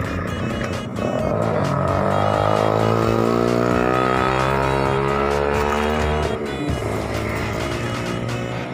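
A motor vehicle engine accelerating, its pitch rising steadily for about five seconds before it stops, over background music with a steady beat.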